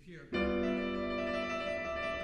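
Grand piano starting suddenly about a third of a second in, its notes ringing on and slowly fading. This is a demonstration of a trill on the second degree over cadential harmony, the classical signal that a cadenza is coming to its end.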